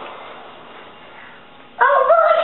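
A soft hiss, then near the end a young girl's high voice comes in loudly on a held note.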